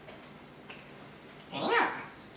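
A short whine about one and a half seconds in, lasting about half a second, that rises and then falls in pitch.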